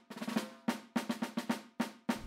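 Drum roll sound effect cueing suspense before a quiz answer is revealed: a run of separate drum hits, about four a second.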